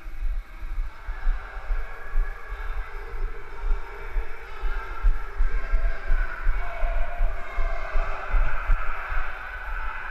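Footsteps running up a concrete stairwell, heard as dull, irregular low thumps through a jostling body-worn camera, over a steady mid-pitched background noise.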